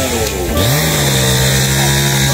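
A small engine revs up about half a second in and then runs at a steady speed, with another engine's pitch sliding up and down before it.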